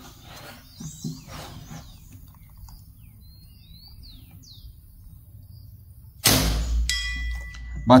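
Artemis T-Rex 5.5 mm PCP air rifle firing a single shot about six seconds in, a sudden loud report, followed about half a second later by a steel plinking target ringing from a strong pellet hit. Birds chirp faintly before the shot.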